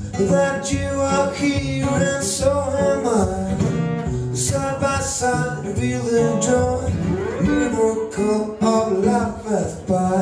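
Live music: a man singing over his own acoustic guitar.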